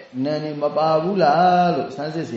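A Buddhist monk's voice reciting in a chant-like, sing-song cadence, with notes held at a steady pitch between gliding phrases.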